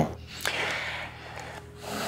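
A man's audible breath: a soft, noisy breath lasting about a second, starting shortly into the pause, over quiet room tone.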